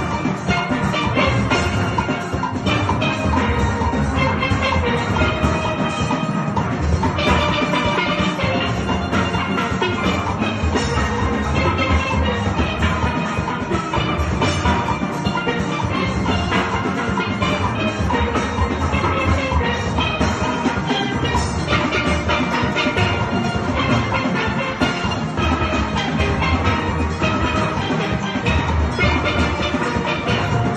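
A steel band of many steelpans playing a continuous tune together, the high lead pans over barrel-sized bass pans.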